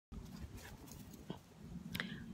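Dogs faintly heard, a few short, quiet sounds over low background noise, with a brief click near the end.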